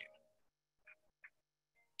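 Near silence, with two faint, brief blips about a second in.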